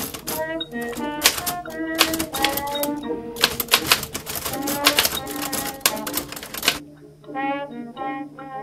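Rapid typing on a Royal manual typewriter: a dense, continuous run of key strikes that stops suddenly about a second before the end, over background music.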